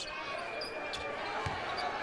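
Arena crowd noise over a basketball being dribbled on the hardwood court, a few dull bounces heard through the crowd.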